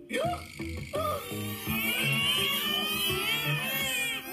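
Cartoon soundtrack played through laptop speakers: a sudden loud vocal outburst from a character just after the start, then high, wavering cartoon crying from about two seconds in, over background music.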